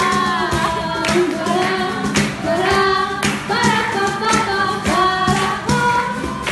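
A woman singing a song live, accompanied by strummed acoustic guitar and cajón, with regular percussive strokes under the held, bending vocal line.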